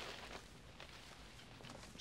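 Very quiet: faint background hiss with a low steady hum, and no distinct sound event.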